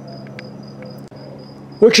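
Insect chirping: a high, even pulsing trill over a faint low hum, with two small clicks.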